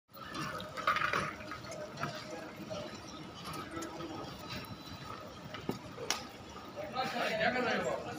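Motorized sliding skylight running, a steady hum, with people talking in the background and a voice near the end.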